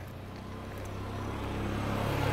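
A low, steady engine rumble that slowly grows louder.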